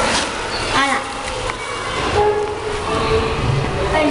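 Noisy room tone with a low rumble and scattered children's voices.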